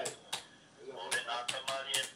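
Computer keyboard keys being pressed: about half a dozen short, irregular clicks, with faint voice and music in the background.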